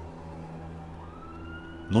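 A faint siren in the distance, its wail sliding slowly down in pitch and then rising again, over a steady low hum.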